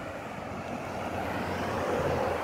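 A vehicle driving past on the road, its engine and tyre noise growing gradually louder.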